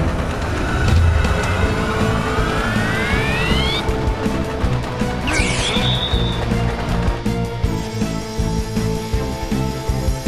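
Background music with a cartoon train's turbine sound effect: a rising whine that builds over about two seconds, then a short whoosh around the middle.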